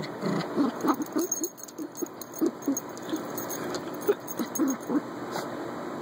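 A small dog digging in dirt, its paws scratching in quick, uneven strokes with short snuffling grunts in between, "a little industrial drill."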